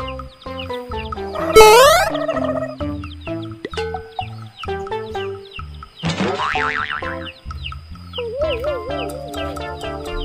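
Upbeat children's background music with a steady beat and cartoon sound effects: a quick rising glide about one and a half seconds in, a sweeping effect about six seconds in, and a wobbling, springy tone near the end.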